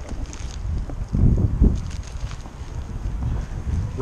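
Wind buffeting the camera microphone, a low uneven rumble that swells about a second in, with faint rustling.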